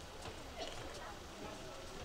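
Indistinct chatter of onlookers' voices, with light sloshing of water as the tiger wades through the pool.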